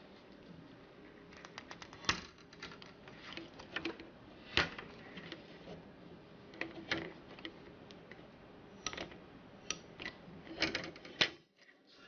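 Hobby knife cutting a plastic model part off its sprue: a string of small, sharp, irregular clicks as the blade cuts through the plastic gates and the sprue is handled, with a quick cluster of clicks near the end.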